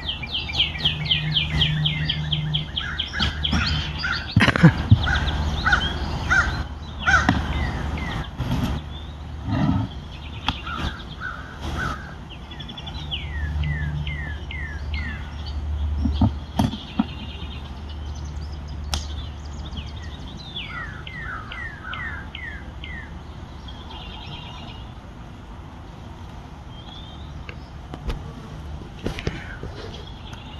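Songbirds singing outdoors: a fast run of downslurred chirps at the start, and another series of falling whistled notes about two-thirds of the way through. Scattered knocks and clicks come from handling a wooden beehive's cover and boxes.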